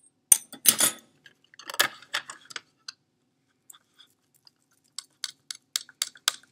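Glass culture tubes with metal caps clinking and knocking as one is uncapped and drawn from a test-tube rack: a few sharp clicks in the first couple of seconds, then a run of quick light ticks near the end.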